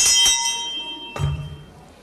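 The presiding officer's bell is struck once, ringing with several clear tones that fade over about a second, marking the close of the order of the day. A dull thump follows about a second in.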